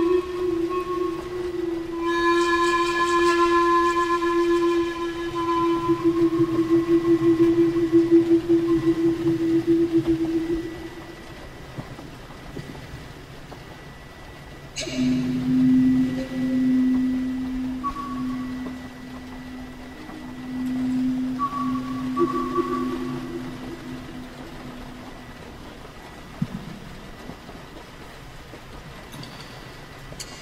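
Native American-style flute playing slow, long-held notes: one note held for about ten seconds and fading out, a short pause, then a lower note held for about ten seconds with brief higher notes over it.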